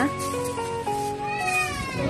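Background music, a simple melody of stepped notes. Over it, about a second and a half in, comes a short high cry that rises and falls.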